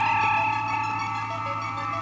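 Synthesized sci-fi teleporter sound effect: a cluster of steady electronic tones that starts suddenly, over a steady low hum and a fast pulsing beneath.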